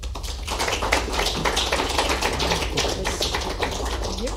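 Audience applauding: many quick hand claps overlapping.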